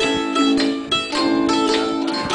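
Improvised blues played on a mandolin and a roll-up electronic keyboard: quick picked mandolin notes over held keyboard chords.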